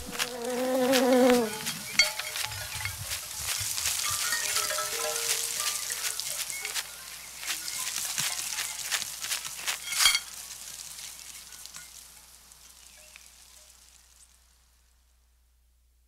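A bow drawn across a living tree branch sounds a short pitched tone with overtones, then gives way to a sparse texture of small crackles and clicks from plant material. There is a sharp click about ten seconds in, and the whole piece fades away by about fourteen seconds.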